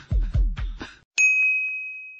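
Electronic background music with a fast kick-drum beat that cuts off about a second in, then a single bright ding sound effect that rings on one high tone and slowly fades.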